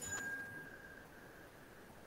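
A faint single ding: a short click followed by a thin ringing tone that fades out within about a second.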